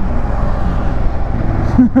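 Motorcycle cruising at about 70 km/h, its engine running steadily under a rush of wind on the microphone. A short laugh comes near the end.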